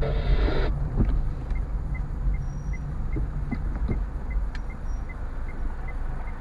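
A car driving slowly, heard from inside the cabin: a steady low engine and road rumble. From about one and a half seconds in, a faint regular tick about two and a half times a second, the turn signal.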